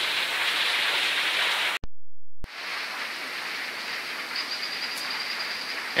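Steady rushing hiss of outdoor noise, broken by a short dropout about two seconds in. A faint high steady whine joins after about four seconds.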